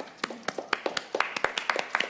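A small audience applauding: a scattering of individual hand claps, each clap distinct.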